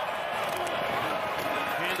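Steady stadium crowd noise of a college football game as heard on a TV broadcast, many voices blended into an even wash; a commentator's voice comes in near the end.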